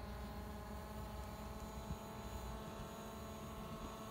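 DJI Mavic Pro quadcopter's propellers giving a steady hum of several stacked tones as it flies its circle.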